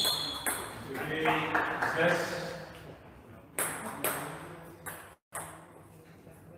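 Table tennis ball hits ringing off bats and table, a couple of sharp pings at the very start, then after a short gap four more ball impacts in the second half, spaced about half a second apart, as the rally ends and the ball bounces away.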